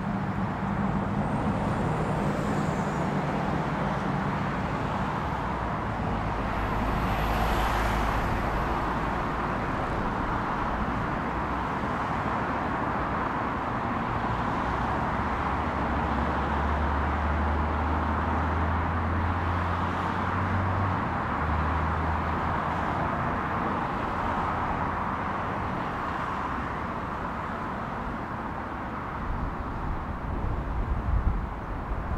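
Twin Honeywell HTF7500E turbofans of an Embraer Legacy 450 business jet at takeoff power, a steady distant roar through the takeoff roll and climb-out. Road traffic rumbles underneath.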